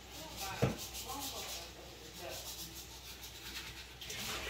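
Faint crinkling of a clear plastic bag and rustling of dry cereal pieces as small hands gather spilled cereal back into the bag, with one sharper click about half a second in.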